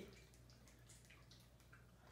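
Near silence: faint room tone with a low hum and a few small, faint clicks.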